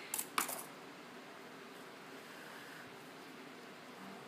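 Metal scissors set down on a hard stone countertop: a few quick clatters about half a second long.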